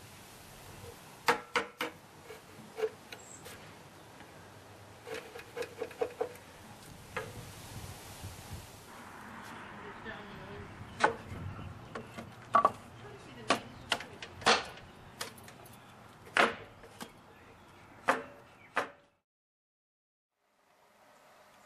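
A wooden mallet striking a chisel, paring out the corners of a rebate in a timber window frame: sharp knocks at irregular intervals, some in quick runs of two or three. Later knocks come as wooden stops are fitted into the frame, and the sound cuts off abruptly near the end.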